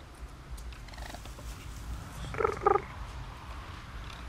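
Young raccoon calling from its crate: a faint call about a second in, then two short pitched calls close together about two and a half seconds in.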